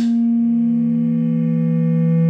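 Rockit HackMe synthesizer sounding a held note from its two oscillators while the oscillator mix knob is turned: the higher tone fades away as a lower tone fades in and grows louder.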